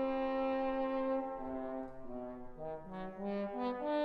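Solo trombones playing a melody in a concerto: a long held note, then a run of shorter notes that step down and back up.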